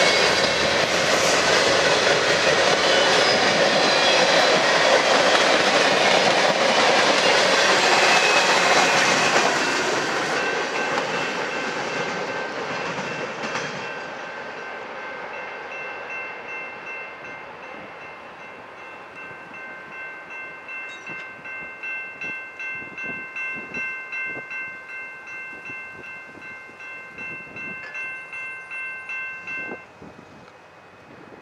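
Freight train cars, covered hoppers and tank cars, rolling past at speed with steel wheels on rail. The rolling is loudest for the first ten seconds and then fades as the end of the train moves away. A grade-crossing signal bell rings in a quick steady rhythm through the second half.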